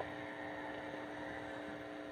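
Faint, steady electrical hum from the microphone and sound system.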